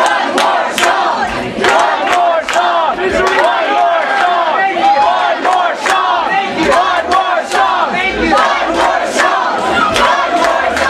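Concert crowd cheering and shouting, many voices at once, with sharp claps in a steady beat about twice a second.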